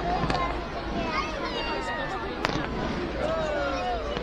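Fireworks bursting overhead: a few sharp bangs, the loudest about two and a half seconds in, over the voices of people talking in the watching crowd.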